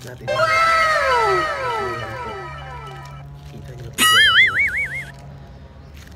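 Cartoon sound effects added in editing: a cascade of falling whistle tones near the start, then about four seconds in a loud, wobbling boing.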